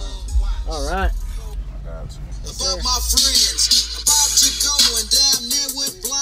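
Rap track played loud through a car audio system during a demo, its four American Bass XR 12-inch subwoofers in a fourth-order C-pillar enclosure giving heavy, deep bass under the rapped vocals. Crisp hi-hats join in about three seconds in.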